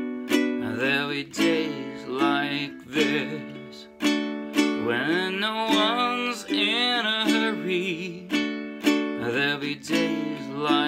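Ukulele chords strummed in a slow, even pattern, with a man's voice singing the melody slowly over it.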